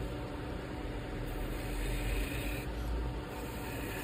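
Wood lathe running with a steady hum while a half-inch spindle gouge cuts coves into the spinning wood. The cut makes a hissing, shaving sound that swells about a second in and again near the end.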